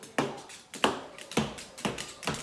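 Moluccan cockatoo tapping on a granite countertop: sharp, hard taps, about two a second, in an even rhythm.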